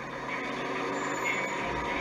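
Steady vehicle engine noise from the race broadcast, heard through a television's speaker, with a low rumble swelling near the end.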